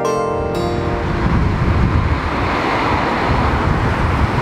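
Wind buffeting the camera microphone outdoors: a rough, deep, steady rush of noise. In the first half-second the last notes of a theme tune fade out under it.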